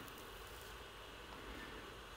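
Faint, steady background hiss with a low hum: room tone, with no distinct event.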